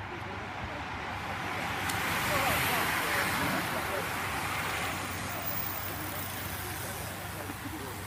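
A bunch of road racing bicycles sprinting past: a rush of tyres and wind that builds to a peak two to three seconds in and then eases off. Spectators' voices run over it.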